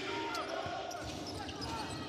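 A basketball being dribbled on a hardwood court, with the steady background noise of an indoor arena and faint voices.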